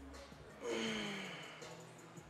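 A man's loud exhale with a falling pitch, starting suddenly under a second in and fading over about a second, as he drives a barbell back squat up out of the bottom.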